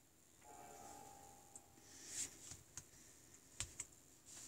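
Near silence broken by a few faint, scattered clicks and taps of typing as a number is entered, the sharpest about two seconds in and again near the end.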